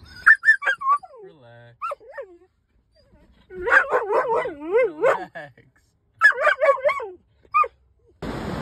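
A dog whining in high, wavering cries that rise and fall, in four bursts with short pauses between; the middle burst is the longest.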